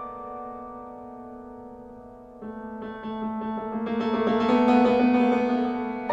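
Solo piano: held notes fade away for about two seconds, then a new chord enters and quickly repeated notes build up, loudest about five seconds in, over a sustained low note.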